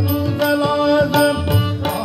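Harmonium holding steady chords over two tabla sets playing a steady rhythm, sharp treble strokes with booming bass strokes, in an instrumental passage of a Marathi devotional abhang.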